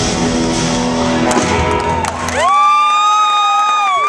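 Live surf rock band, with upright bass, drums and electric guitars, playing its closing bars. The band cuts off about two and a half seconds in, leaving a long high held note that bends up into place, while the crowd starts cheering.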